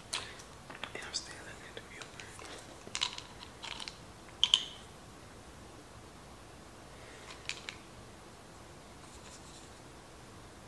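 A few short clicks and small rustles of small items being handled, with soft mouth sounds. They come mostly in the first five seconds, with two more clicks about seven and a half seconds in.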